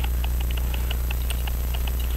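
Steady low hum with irregular faint light ticks of steel tweezers against a steel watch mainspring and winder arbor as the spring's inner coil is worked onto the arbor.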